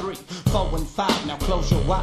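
Gospel rap track: rapped vocals over a hip hop beat with heavy, pulsing bass.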